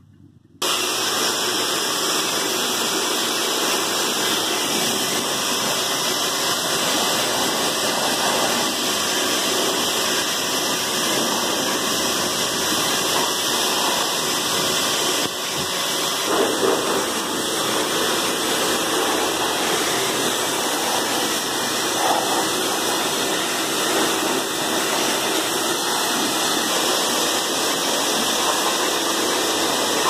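Pressure washer running, its water jet spraying onto a dirt bike's wheels: a loud, steady hiss that starts abruptly about half a second in.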